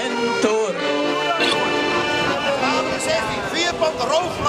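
Men's shanty choir singing to two accordions, breaking off about a second and a half in; a man's loud voice then carries over an outdoor crowd.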